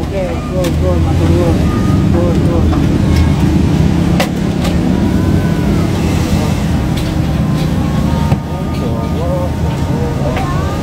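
A bus's diesel engine idling close by with a steady low rumble, and faint voices in the background.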